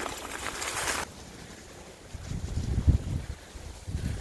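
Mountain bike tyres rolling over dry fallen leaves, a steady hiss that cuts off abruptly about a second in. Low, gusty wind rumble on the microphone follows in the second half.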